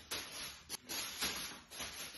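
Plastic shopping bags rustling faintly as they are tossed up and caught by hand, with a few short crackles.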